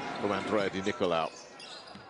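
Basketball being dribbled on a hardwood court, with a commentator's voice over the first half.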